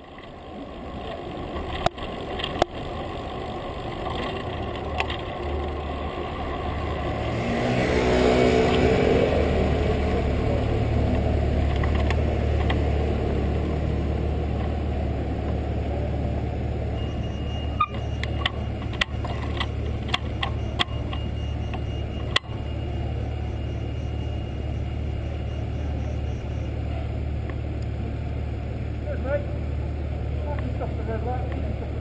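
City street traffic. A vehicle passes close about eight seconds in, falling in pitch as it goes. After that a steady low engine hum runs on, with a few sharp clicks later.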